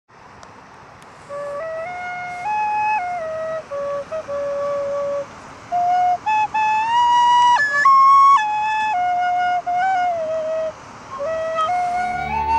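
A slow melody played on a small end-blown whistle flute, one clear note at a time moving up and down in steps, starting about a second in. A faint steady hiss runs underneath.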